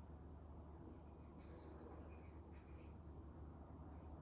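Near silence: room tone with a low steady hum, and faint high-pitched scratching for about two seconds in the middle.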